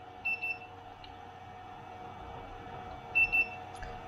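Handheld infrared thermometer beeping twice, about three seconds apart, each time a short high double chirp, as it is triggered to read the surface temperature.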